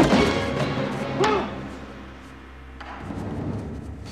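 Film fight-scene soundtrack: a sharp hit with a short shout at the start and another short shout about a second in, over orchestral score with timpani that carries on more quietly alone.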